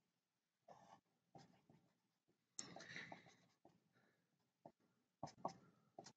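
Faint strokes of a marker pen drawing lines on paper, several short scratches with a longer one a little over halfway through.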